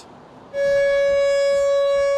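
Outdoor storm warning siren sounding one steady, unwavering high tone, starting abruptly about half a second in: the signal of a tornado warning.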